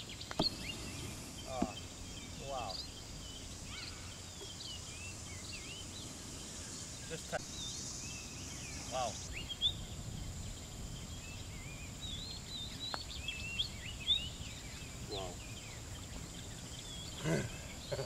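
Outdoor ambience of many small birds chirping on and off throughout, over a steady high-pitched insect buzz, with a few faint single clicks.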